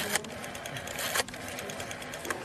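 Black rotary desk telephone being dialled: rapid runs of small clicks as the dial spins back, with a sharper clack of the handset at the start and another about a second in.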